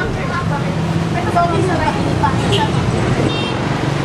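People talking over the steady low hum of a motorcycle engine running. A brief high-pitched beep sounds about three seconds in.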